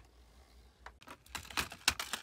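A quick run of light clicks and taps from small plastic toys being handled. It starts about a second in and is loudest just before the end.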